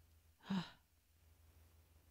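A woman's short, breathy sigh, about half a second in.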